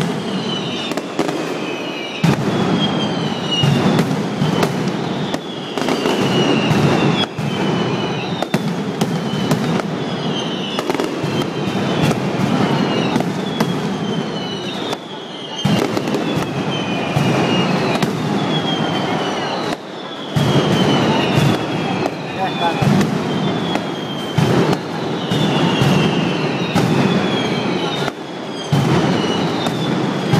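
Mascletà firecrackers by Pirotecnia L'Alacantina going off in a loud, dense, unbroken string of sharp bangs. High whistles falling in pitch cut through every second or two.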